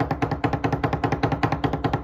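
Drum roll: a fast, even run of strokes, about fifteen a second, at a steady level.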